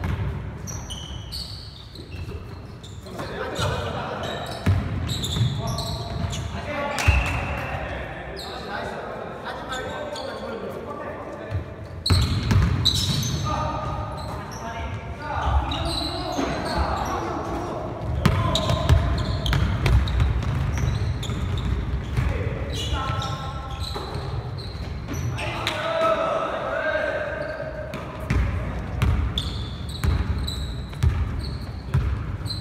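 Basketball game on a hardwood gym floor: the ball bouncing and thudding again and again, short high sneaker squeaks, and players calling out to each other, all echoing in a large gym.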